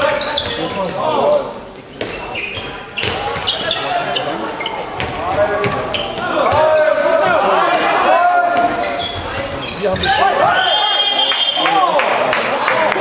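Handball being played in a large sports hall: the ball bouncing and slapping on the floor and players' voices calling out. Near the end, a short steady whistle blast from the referee.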